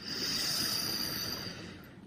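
A person's slow inhale drawn in through the left nostril while the right nostril is held closed by a finger, as in alternate-nostril breathing (Nadi Shodhana). The airy hiss swells quickly and then tails off over about a second and a half.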